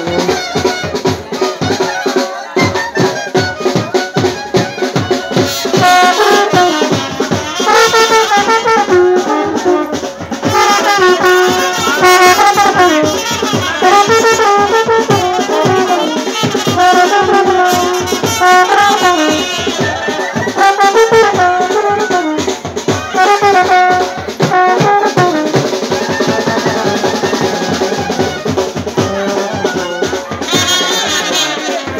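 Wedding brass band playing: drums keep up a fast, steady beat, and trumpets and a large brass horn join with a loud stepping melody about six seconds in.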